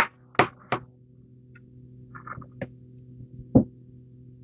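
A few short knocks and clicks of small objects being handled on a tabletop, the loudest a single knock about three and a half seconds in, over a faint steady hum.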